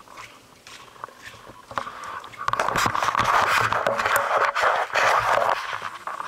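Rustling and scraping from a handheld camera moved close against clothing, with scattered clicks. It becomes a loud, dense rustle from about halfway in and eases off near the end.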